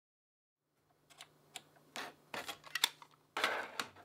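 Plastic and metal clicks and clunks of a cassette being handled and loaded into a Technics cassette deck. They begin about a second in, with a longer rattling clatter near the end, over a faint low hum.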